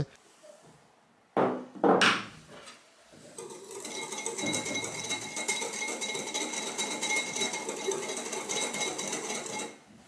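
Two short knocks of a spatula on glass, then a small metal wire whisk stirring dry sugar and cornstarch in a glass bowl: a steady scratchy rattle of the wires against the glass, with a faint ringing, for about six seconds.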